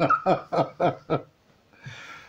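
Laughter: a run of about five short pulses, each falling in pitch, over the first second or so, then a brief gap and a faint breath near the end.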